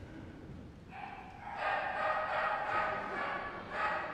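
A dog giving a long, drawn-out pitched whine or howl that swells about a second in, followed by a shorter call near the end.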